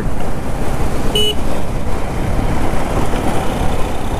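Motorcycle under way at about 45 km/h in traffic: steady engine and wind rumble on the microphone. A short horn toot sounds about a second in.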